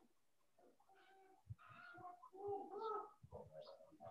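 Faint bird calls: several short pitched calls, starting about a second in, against near silence.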